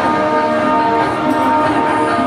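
Music with sustained, ringing bell-like tones over a lower melody that moves up and down.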